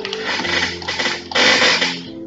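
Soft background worship piano with held notes, covered by a loud rough noise that swells near the end.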